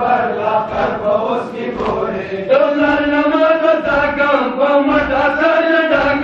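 Men chanting a noha, the Shia mourning lament, in long drawn-out melodic lines led over a microphone. A new, louder phrase begins about two and a half seconds in.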